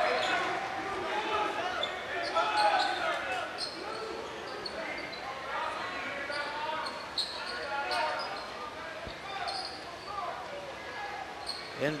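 Crowd murmur and scattered voices echoing in a high school gymnasium while play is stopped, with a few short high squeaks and taps typical of sneakers on a hardwood court.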